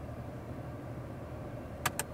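Two quick clicks near the end as the turn-signal lever is switched from the left signal to the right, over a steady low hum from the idling engine and the blower heard inside the car's cabin.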